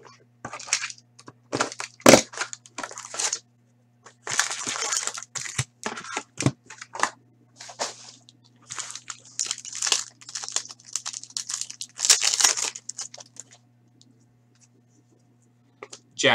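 Foil hockey-card packs being pulled from a cardboard hobby box and torn open: irregular crinkling, tearing and rustling in bursts that die away about two seconds before the end. A low steady electrical hum runs underneath.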